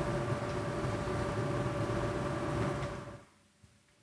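Steady hiss and low hum with a faint steady tone, the background noise of a recorded talk being played back between sentences. It cuts off suddenly about three seconds in as the playback is stopped.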